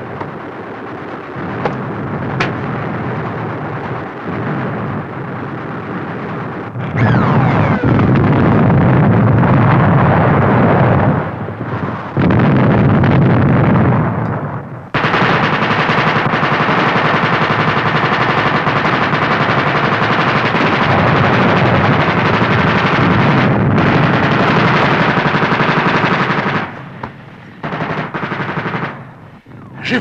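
Machine-gun fire in long continuous bursts on an old film soundtrack, loudest in three stretches, the last lasting about ten seconds.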